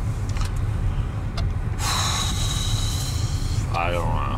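Car engine idling, a steady low rumble heard from inside the cabin. About two seconds in comes a hiss of nearly two seconds.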